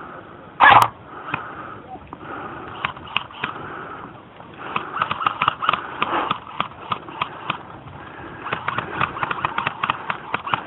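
A single loud knock about a second in, then a run of sharp clicks and pops that grows busier from about halfway through.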